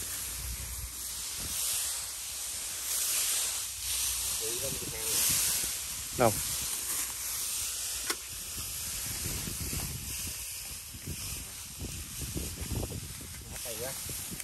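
Dry rice stalks and grass rustling and swishing as people push through and part them by hand, in surges during the first half.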